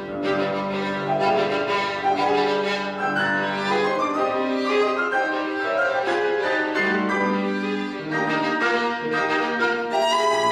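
Background music: a violin playing a slow melody of held notes over a lower accompaniment.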